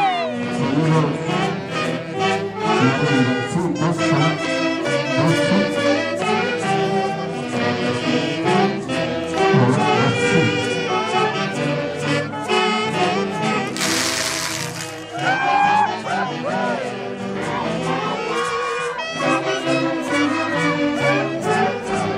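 Brass band playing dance music with a steady drumbeat. About halfway through, a brief loud hiss cuts across the music for about a second.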